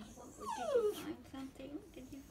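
Small dog whining: one long falling whine, then a wavering whimper, while it begs for food.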